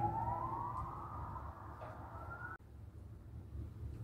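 A wailing siren, its pitch sweeping slowly upward for about two and a half seconds before it cuts off abruptly, leaving faint room tone.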